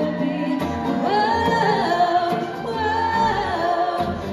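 Live band music with guitars, and a woman singing long held notes that come in about a second in.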